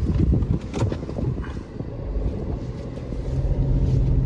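Small automatic car moving off, heard from inside the cabin: a steady low engine and road rumble that grows louder near the end, with a few light knocks in the first second.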